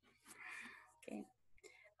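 Near silence with faint speech: a quiet "okay" about a second in, over the meeting's video-call audio.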